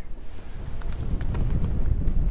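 Wind buffeting the microphone, a steady low rumble, with a few faint soft ticks above it.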